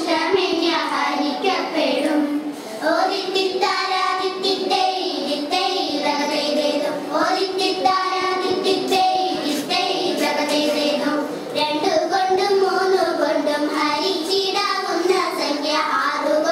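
A group of young girls singing a vanchippattu, the Kerala boat song, together in Malayalam.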